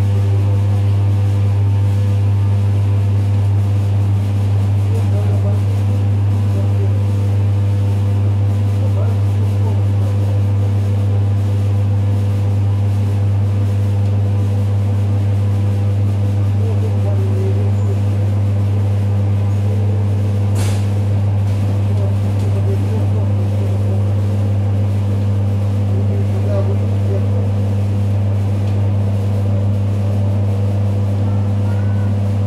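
Inside a moving ЭД9Э AC electric multiple unit: a loud, steady low electrical hum from the train's traction equipment, over the running noise of the train. There is one sharp click about two-thirds of the way through.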